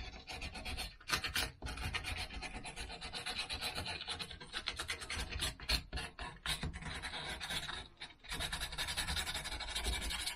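Hand carving tool paring and scraping cottonwood bark in quick, repeated short strokes, with a brief pause about eight seconds in.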